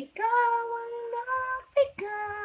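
Singing: one voice holding long, slow notes of a ballad, with a brief sung note near the end.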